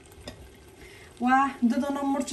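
Faint sizzling of an onion-tomato sauce cooking in a pot. About a second in, a woman's voice starts and covers it.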